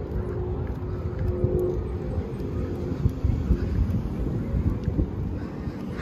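Distant engine drone over a low outdoor rumble; the drone fades away over the first two seconds.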